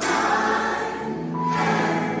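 Recorded gospel music: a choir sings over sustained accompaniment, a new phrase coming in loudly at the start.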